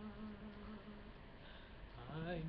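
A man singing, holding one steady note that fades out about a second in, followed by a quiet pause before the next phrase.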